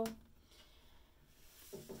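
Quiet room tone with a faint hiss in a pause between words; a spoken word trails off at the start and another begins near the end.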